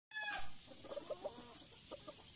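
Gamefowl rooster clucking: a short, louder call with falling pitch near the start, then a few soft, low clucks.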